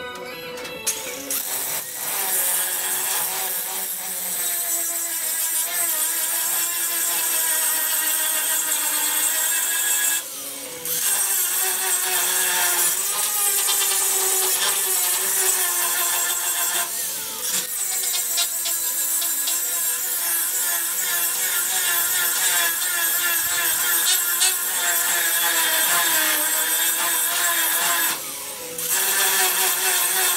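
Handheld power grinder working the steel A-pillar of a truck cab. Its whine wavers as it is pressed on and drops out briefly about ten seconds in and again near the end, with background music underneath.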